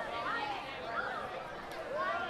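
Several distant, indistinct voices calling out and chattering, high-pitched and overlapping, with no words that can be made out.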